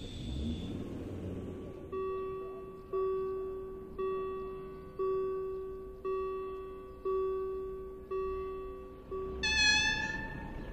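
Level crossing bell ringing about once a second, eight strokes, as the barriers rise after the train has passed. Near the end comes a brief, louder horn toot.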